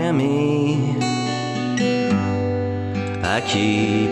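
Slow ballad on a strummed acoustic guitar, with a man singing held, gliding notes over it.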